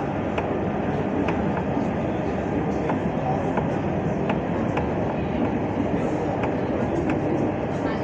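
Dubai Tram running, heard from inside the car: a steady rumble with a few faint, irregular clicks.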